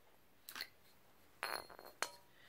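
Metal handle sections of a folding shovel being unscrewed and handled. There is a faint scrape about half a second in, and a light metallic clink with a brief ring about a second and a half in.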